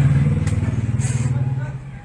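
Small motorcycle engine running with an even low hum that dies away over the last second.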